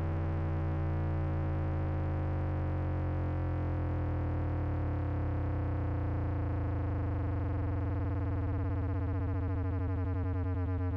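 A single distorted synth bass note from the MPC's Fabric synth, held steady as it is resampled. Its tone is squared off and gritty, and a slight fluttering pulse creeps in near the end.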